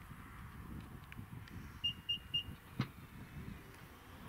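Renault Austral's powered tailgate opening from the key card: three short high beeps, evenly spaced, then a sharp click as the latch releases.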